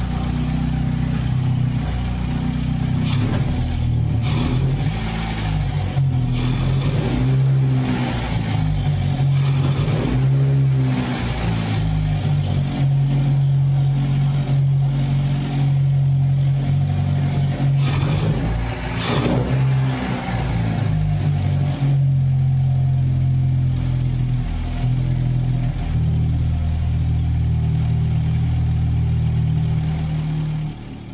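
Freshly restored Austin-Healey four-cylinder engine with twin carburettors running after its first start. It revs up and down a few times in the first twenty seconds, then settles into a steady idle.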